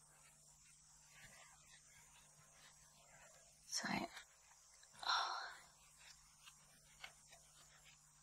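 Quiet room tone with a faint steady hum. About halfway through, a woman says "so", and a second later there is one more short sound.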